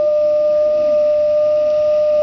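Wooden organ pipe blown with helium from a balloon, sounding one loud, steady tone. The helium raises the pipe's pitch above its note in air.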